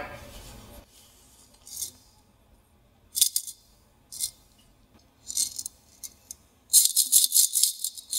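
Coins rattling inside a ceramic piggy bank as it is shaken by hand, in short bursts about a second apart, then a longer spell of shaking near the end.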